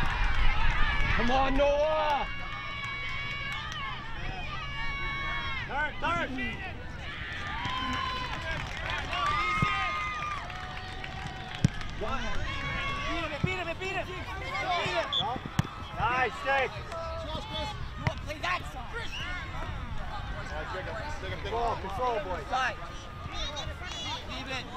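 Shouts and calls from players and spectators across a soccer field, too far off to make out as words, with a few sharp knocks. A low rumble, like wind on the microphone, fills the first two seconds.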